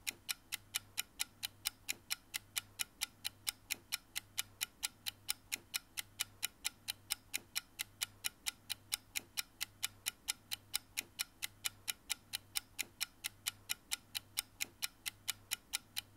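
Even, clock-like ticking, about four ticks a second, over a faint low hum that pulses underneath.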